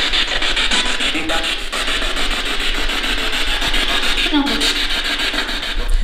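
Loud steady hiss of radio static from a spirit box sweeping stations, with faint snatches of voice breaking through about a second in and again near the end.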